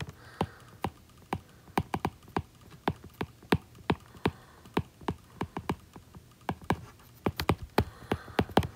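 A stylus tip tapping and clicking on a tablet's glass screen during handwriting, with irregular light clicks several times a second.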